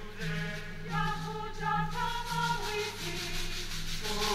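Choir singing a slow sung response, holding notes that change about once a second, with a faint rhythmic rustle behind the voices.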